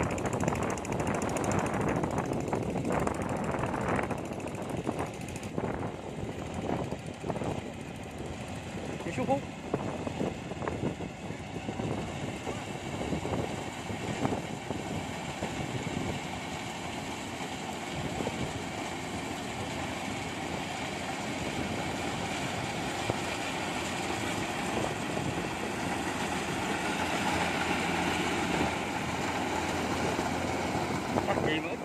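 Kubota rice combine harvester running as it cuts a rice crop, a steady machine drone that grows louder in the second half as it comes closer, mixed with indistinct voices.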